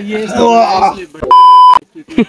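A man's raised voice, then about a second and a quarter in a loud, steady electronic bleep lasting half a second that starts and stops abruptly: a censor tone dubbed over a word.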